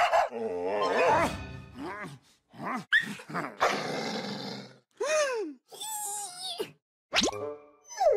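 A string of cartoon sound effects and character voice noises: a cartoon dog growling and snarling, then short pitched squeaks and sliding tones, with brief silences between them.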